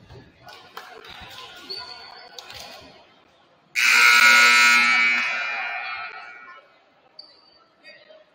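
Gymnasium scoreboard horn: one loud, buzzing blast of several tones at once, starting suddenly about halfway through and fading away over about three seconds. It sounds as the timeout clock passes fifteen seconds, the usual warning for the teams to leave their huddles. Before it there are faint voices and a few ball bounces.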